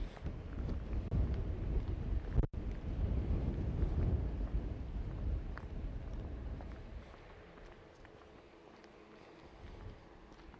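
Wind buffeting the camera microphone as a low, gusty rumble, strongest in the first few seconds and dying down after about seven seconds, with a brief break about two and a half seconds in.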